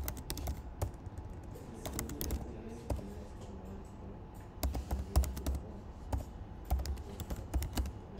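Typing on a computer keyboard: quick runs of key clicks in several short bursts with pauses between them.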